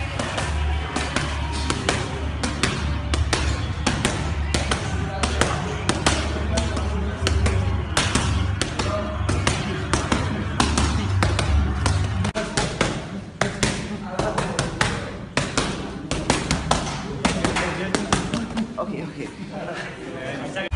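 Boxing gloves striking focus mitts in rapid, irregular combinations of sharp slaps. They sound over music with a heavy bass line that drops out about twelve seconds in.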